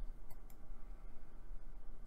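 Two light computer mouse clicks close together about half a second in, over a steady low hum.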